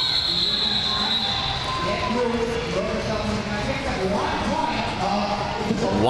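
Referee's whistle, a steady high tone for about the first second and a half, ending the roller derby jam. Crowd noise and the house announcer over the hall's PA follow, echoing in the large hall.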